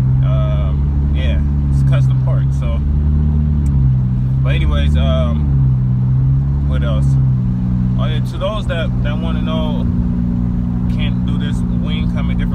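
Cabin noise of a 2018 Honda Civic Hatchback Sport with CVT cruising at highway speed: a steady low engine and road drone whose pitch sways gently, then holds level from about eight seconds in.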